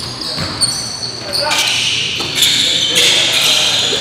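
Basketball game sounds in a gymnasium: sneakers squeaking on the hardwood, the ball bouncing and players' voices, echoing in the hall.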